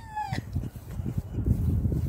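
A high laugh trails off in a falling squeal within the first half second, then a low, uneven rumble of wind buffeting the microphone.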